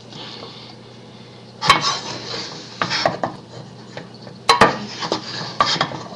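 A wooden spoon stirring thick, sticky homemade play-dough in a metal non-stick saucepan, scraping the pan and knocking against its sides in irregular sharp knocks, the loudest a little under two seconds in and twice in quick succession about three-quarters of the way through.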